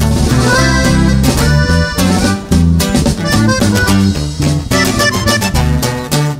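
Instrumental break of a live norteño corrido: accordion playing the lead melody over strummed guitar and a bass line that moves on the beat, with no singing.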